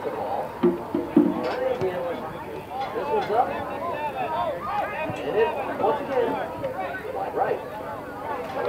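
Several people talking and calling out at once, with overlapping voices throughout, and a couple of short knocks about a second in.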